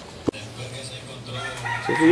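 A rooster crowing in the background, with a single sharp click about a quarter second in.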